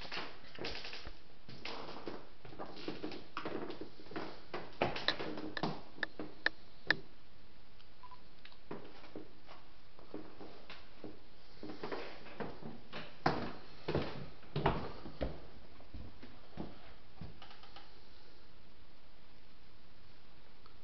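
Footsteps going down wooden stairs: irregular thuds and clicks, with a few sharper knocks midway and again about two-thirds of the way through, over a steady hiss.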